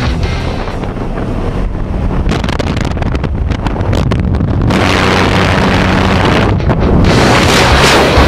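Rock music over a steady rushing of wind and aircraft noise on the microphone. The wind turns loud about five seconds in, as the tandem pair leaves the plane's open door into freefall.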